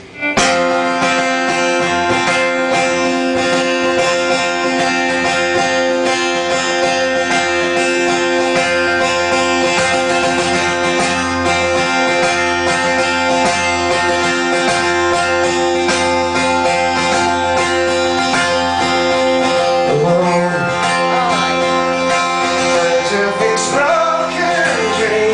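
Live band music with a strummed acoustic guitar over held chords, starting suddenly just after the start. A voice begins singing near the end.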